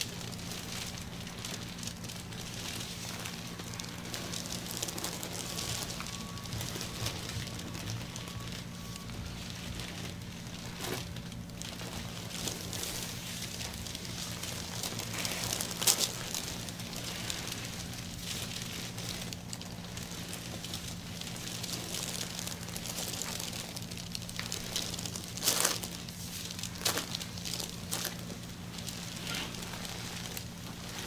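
Plastic-gloved hands rubbing massage lotion over the bare skin of a back: a continuous close rubbing texture with a few sharper clicks, the loudest about halfway through and two or three more near the end. A steady low hum runs underneath.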